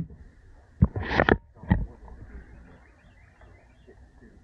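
A sharp knock about a second in, then two short rustling bursts on the microphone as the handheld camera is moved, followed by faint steady outdoor background.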